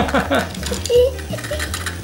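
Small die-cast toy cars clicking and clinking against each other on a table, a run of light metallic clicks, with a child's voice.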